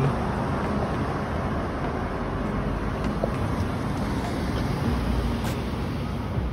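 Steady street traffic noise: a low rumble of cars on the road, with a faint engine hum swelling slightly near the end.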